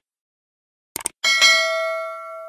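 Mouse-click sound effect, a quick double click about a second in, followed at once by a single bell chime that rings and slowly fades: the notification-bell ding of a subscribe animation.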